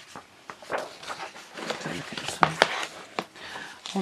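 Paper pages of a paperback colouring book being turned and handled: a run of rustles and crackles, with two sharp paper snaps about halfway through.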